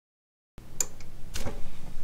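Silence for about half a second, then camera handling noise: a few clicks and rustles as a hand-held camera is settled into place, over a low steady hum.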